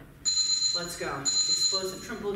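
Two long, high-pitched electronic beeps, each about three-quarters of a second, the second beginning just after the first ends, over a voice.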